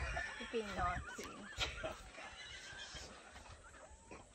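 A woman laughing in several high, warbling bursts during the first two seconds, fading after that.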